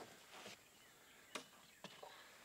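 Near silence: faint outdoor background, with two short faint clicks about half a second apart past the middle.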